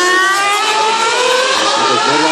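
Formula One car's 2.4-litre V8 engine accelerating past, its high-pitched whine rising steadily in pitch through one gear.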